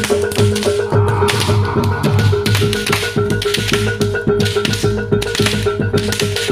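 Live East Javanese jaranan gamelan music: dense, rapid drum strokes over a steady beat, with a high note sounded again and again and low ringing tones underneath.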